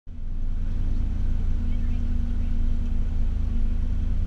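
Honda CRX engine idling steadily, a constant low hum.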